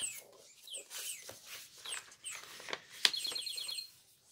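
Quiet rustling and sliding of paper and card as a card is handled and a journal page is turned. A click about three seconds in is followed by a rapid, high-pitched chirping trill lasting under a second.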